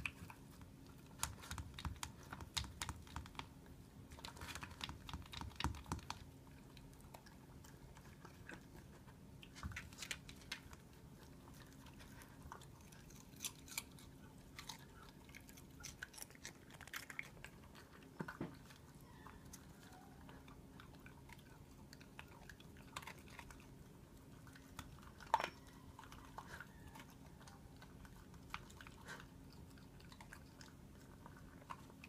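A miniature dachshund crunching lettuce and cucumber out of a plastic slow-feeder bowl: many short, crisp chewing clicks, thick in the first few seconds and sparser after.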